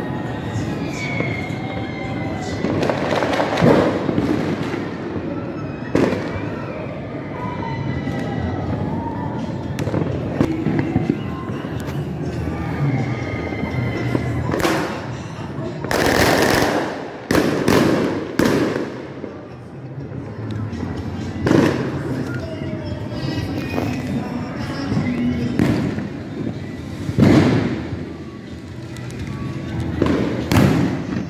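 New Year's fireworks going off around the neighbourhood: a dozen or so loud bangs at irregular intervals, several in quick succession about halfway through, over background music.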